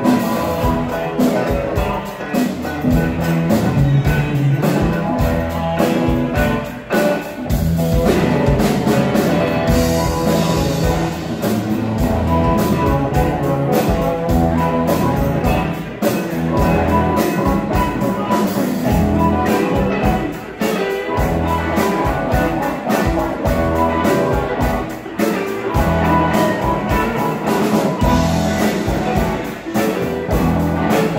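Live blues band playing an instrumental stretch, with electric guitars, bass, a steady drum kit beat, a harmonica played into a microphone, and a keyboard.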